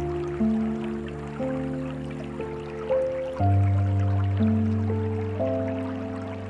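Slow, soft piano music, a new note or chord about every second over sustained low bass notes, with a deep bass note struck about three and a half seconds in. A faint trickle of water runs beneath the music.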